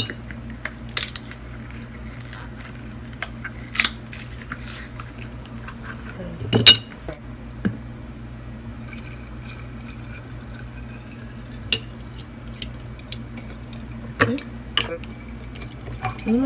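Ice cubes and lemon slices going into a glass mason jar: scattered clinks and knocks, the loudest about six and a half seconds in, over a steady low hum.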